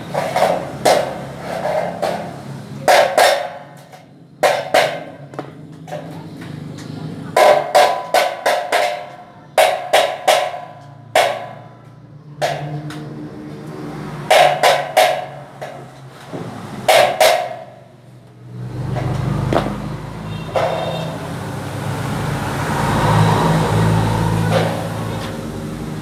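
Sharp metallic clicks and clacks, irregular and often in pairs, from hand work with a small tool on a light-steel roof-frame profile. From about two-thirds of the way through, a low engine hum swells and fades.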